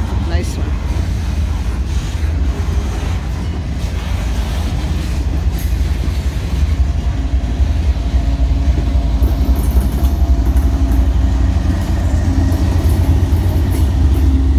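Freight train of boxcars rolling past close by: a steady low rumble of wheels on rail. From about halfway a steady engine hum grows in and the sound gets a little louder as the rear-end diesel locomotive (DPU) approaches.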